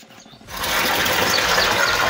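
Water gushing steadily from a hose pipe and splashing into a concrete water tank, starting suddenly about half a second in.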